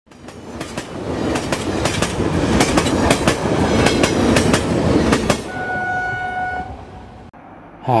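A rushing, clattering sound effect that builds up over about five seconds, full of rapid irregular clicks, then gives way to one steady horn blast of about a second that fades out.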